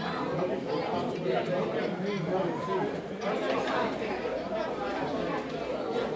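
Crowd chatter: many people talking at once at tables in a large hall, a steady hubbub of overlapping conversation with no single voice standing out.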